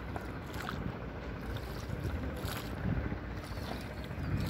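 Small wooden rowing boat on a river: water sloshing against the hull with a couple of short splashes, over a steady low wind rumble on the microphone.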